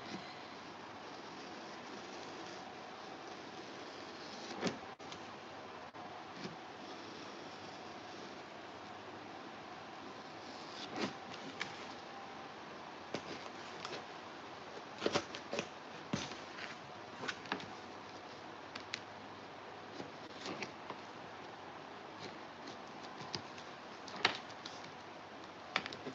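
Quiet handwork with a hot knife cutting around foam board: a steady low hiss with scattered light clicks and taps, a few louder ones in the middle and near the end.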